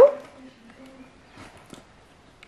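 A short voice exclamation rising in pitch right at the start, then quiet, faint rustling and ticking of small cardboard packaging being handled and opened.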